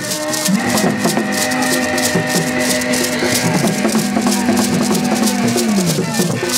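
Beaded gourd rattles (shekere) shaken in a steady beat, about five strokes a second. A long held low note sounds with them from about half a second in until just before the end.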